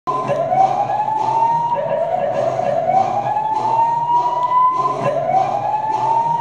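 Siren sound effect played over a gym sound system: a wail that rises in pitch again and again, about every second and a half, with sharp hits in between.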